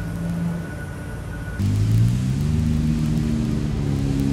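An engine running: after an abrupt change about one and a half seconds in, its hum rises in pitch for a moment, then holds steady. Before that, a quieter hum with a thin high whine.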